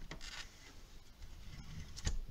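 Faint scraping of a paper trimmer's scoring head slid along its rail, lightly creasing a sheet of cardstock.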